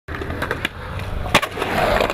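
Skateboard wheels rolling on concrete, a steady rumble broken by a few sharp clacks of the board, the loudest a little over a second in.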